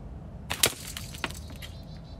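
A slingshot shot striking at the target by the backstop: a sharp crack about half a second in, then a scatter of smaller cracks and clatter, with a second crack about a second in, fading within about a second.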